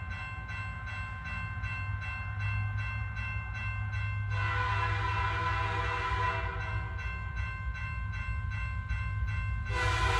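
Underground mine train running along the rails with a steady low rumble and whine. It sounds its horn for about two and a half seconds, starting about four seconds in, and again just before the end.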